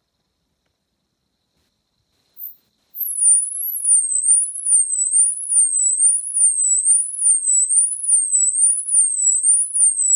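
Kemo ultrasonic signal generator driving piezo tweeters, turned down to setting three so its output falls into the audible range: a shrill, high-pitched tone that warbles up and down in a steady cycle of about three sweeps every two seconds. It starts about three seconds in, sliding down from a very high pitch into the warble.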